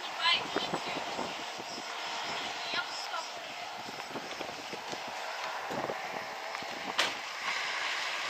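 Outdoor roadside ambience: a steady noise of passing traffic and wind with people's voices over it, and a single sharp click about seven seconds in.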